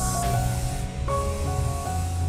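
Aerosol spray can hissing, a strong burst that cuts off just after the start, then fainter, under instrumental background music.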